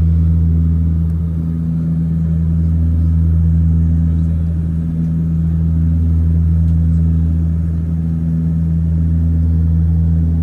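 Cabin drone of a Saab 340's twin turboprops in cruise: a loud, steady deep hum with a fainter tone pulsing about once a second, the whole sound swelling and fading slowly every few seconds.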